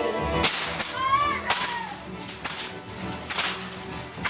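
Sharp slashing cracks, about six in four seconds, as a paper shadow-theatre screen is struck and torn apart, with music faintly beneath.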